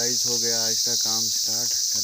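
Steady, high-pitched insect chorus, with a man's voice talking over it.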